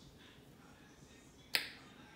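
A near-silent pause, then a single sharp click about one and a half seconds in.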